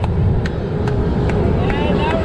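A person clapping, claps spaced about half a second apart, over a steady low rumble of the roller coaster train rolling along its track. Faint voices can be heard near the end.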